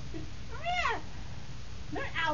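A puppy gives one short, high whine that rises and then falls in pitch, about half a second long.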